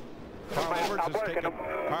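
A man speaking in race commentary, with the faint steady drone of stock cars running on the track beneath it.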